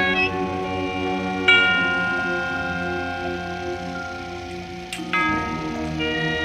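High school marching band playing sustained chords, brass and mallet percussion together. A bright struck chord rings out about a second and a half in, and a new chord comes in about five seconds in.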